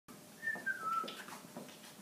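A person whistling three short falling notes, with a few light knocks alongside.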